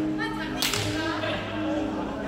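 A sharp crack of a badminton racket striking a shuttlecock, about half a second in, over music with long held notes.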